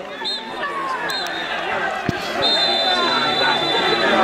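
Several voices of football players and onlookers shouting and talking over one another. There is a sharp knock about halfway through, and a steady high-pitched tone comes in shortly after and holds to the end.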